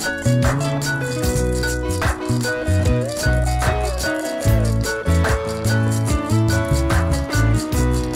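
Instrumental jam: a live electric guitar played over a loop-pedal backing, with held bass notes, a fast steady rattling percussion pattern and a heavier beat about every second and a half.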